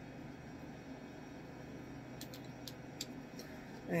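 Steady, faint background noise with a few light clicks from about two seconds in, the sound of a chrome-vanadium steel crowfoot wrench being handled.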